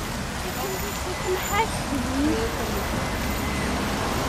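Outdoor roadside ambience: a steady low rush of traffic noise, with faint voices of passers-by.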